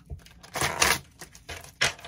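Tarot cards being handled in the hands: a papery swish about half a second in and another near the end, with small clicks of cards and fingernails between.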